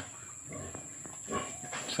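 A sow grunting faintly, a few short low grunts in the second half.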